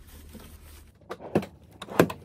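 A few knocks and rustles of someone moving about inside a car cabin, the loudest knock near the end, over a quiet low hum.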